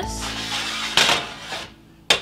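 Metal cookie sheet clattering as it is set down and slid on an electric stovetop, two sharp hits about a second apart, over background music.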